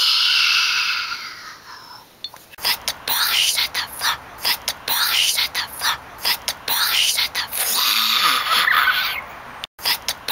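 A little girl's breathy, whispered vocals close to the microphone. It opens with a long hoarse, unpitched cry, then runs into short whispered syllables with brief gaps.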